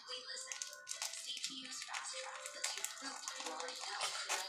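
Faint background music under small irregular clicks and crackles from a dried charcoal peel-off mask being pulled away from the skin of the face.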